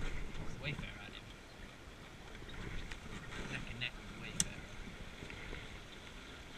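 Wooden Scorpion sailing dinghy under way in light wind: water moving against the hull and wind on the microphone, with a single sharp click, such as a fitting or block knocking, about four seconds in.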